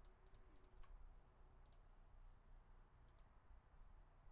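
Near silence with a few faint computer mouse clicks: several within the first second, then a pair near the middle and another pair later on.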